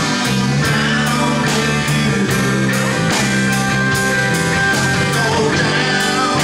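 Live rock band playing: electric guitars and bass with drums keeping a steady beat of about three strokes a second.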